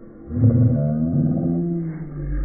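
A man's loud, low-pitched, drawn-out vocal cry, starting about half a second in and trailing off near the end.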